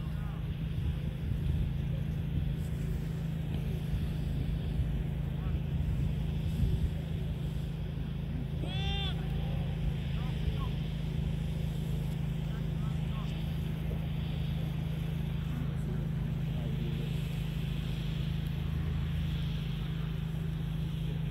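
Soccer-match sideline ambience: scattered distant voices of players and spectators over a steady low drone, with one loud shout about nine seconds in.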